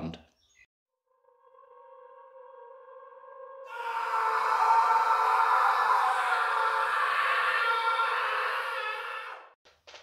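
Title-card intro sound effect: after a short silence, sustained tones enter one above another and swell, then about four seconds in a dense, hissy wash of many tones comes in, holds steady and fades out near the end.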